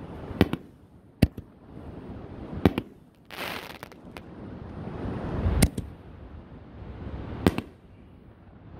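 Raccoon Fireworks 5-inch aerial canister shells firing: a series of about five sharp booms. The loudest and deepest comes a little past halfway, and a brief hiss falls near the middle.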